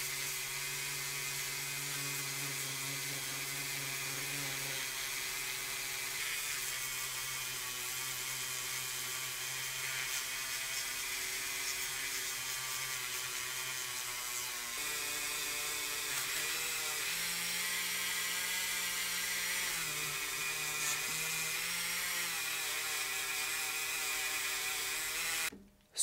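Handheld rotary tool spinning a polishing wheel against a diecast car's metal base, buffing it with metal polish: a steady high motor whine. Its pitch shifts a few times in the second half, and it cuts off just before the end.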